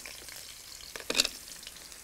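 Fresh curry leaves sizzling in hot sunflower oil with whole spices, a steady frying hiss with a sharper crackle about a second in.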